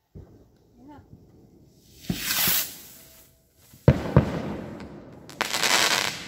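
Consumer firework going off: a rising hiss about two seconds in, two sharp bangs about four seconds in, then a loud crackling hiss near the end.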